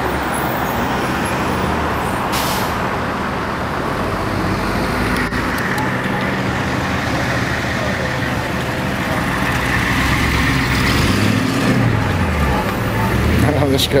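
Street traffic: vehicle engines running steadily, with a low engine pitch gliding as a vehicle moves near the end.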